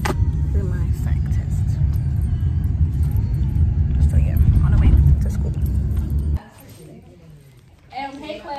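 Low, steady rumble inside a moving car's cabin: road and engine noise. It cuts off suddenly about six seconds in, leaving a much quieter room.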